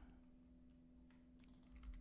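Faint computer keyboard keystrokes, a short cluster of key presses in the second half, over a low steady hum.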